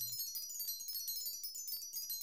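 A cartoon magic-spell sparkle effect for a levitation spell: many short, high chime tones twinkling and overlapping, fairly quiet.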